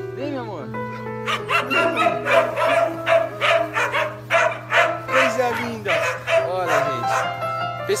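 Background music with held notes, over which a young dog gives several short rising-and-falling yips and whines.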